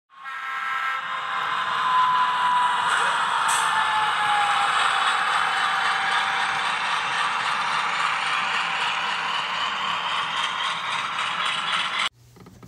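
A train horn chord sounds in the first second, then the steady rolling noise of a moving train runs on, with a single tone sliding slowly down in pitch a few seconds in.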